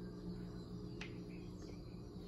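Quiet steady background hum with one light click about a second in, from a plastic mouse trap being handled.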